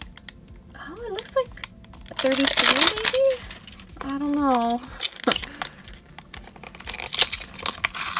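Clear cellophane wrapper crinkling as it is pulled off a small cardboard blind box, then the box flaps being opened, with scattered crackles and light taps and one denser burst of crinkling about two seconds in. A few short wordless vocal sounds come in between.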